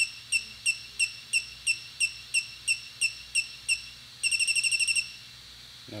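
Electronic beeper sounding during a gimbal IMU accelerometer calibration: short high beeps at about three a second for nearly four seconds, then a quick run of rapid beeps about a second later, marking the end of the calibration step.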